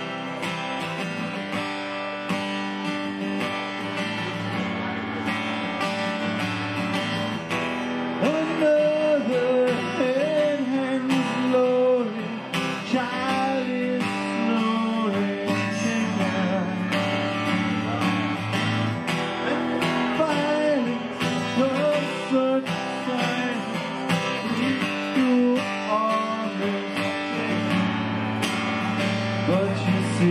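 Acoustic guitar strummed steadily, with a man's singing voice joining about eight seconds in.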